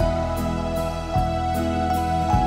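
A slow, tender gospel song: a man singing held notes over an instrumental accompaniment, with the chords changing about once a second.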